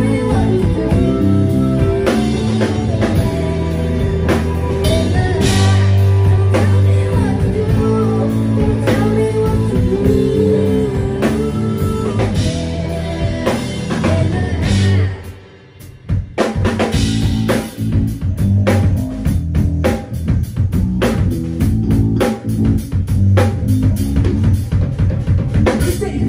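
Live rock band playing: electric guitar, bass guitar and drum kit with vocals over them. About fifteen seconds in the music stops short for a moment, then comes back in on a driving drum beat.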